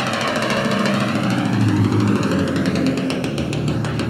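Live rock drum solo on a full drum kit: dense rolls and strikes over low, ringing drum tones, with a slow sweeping whoosh running through the sound.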